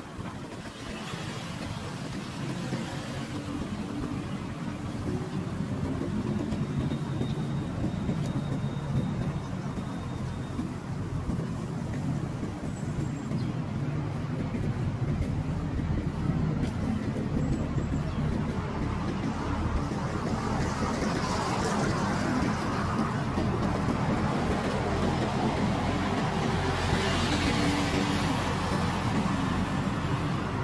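City street traffic: a steady low rumble of car engines and tyres on the road, with vehicles passing close by about two-thirds of the way in and again near the end.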